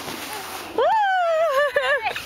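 A person cheers a long, excited "Woo!" that starts a little under a second in. The pitch jumps up, then is held and wavers downward. Before the cheer there is a faint, steady hiss.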